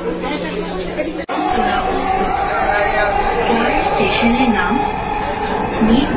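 Passengers' voices inside a Dhaka Metro Rail car. After a sudden break about a second in, a steady high whine from the moving metro train runs under the voices.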